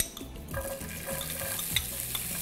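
Diced onion landing in hot olive oil and lamb pan juices in a nonstick frying pan, starting to sizzle steadily about half a second in. A metal spoon scraping the last onion off a small bowl adds a few light clicks.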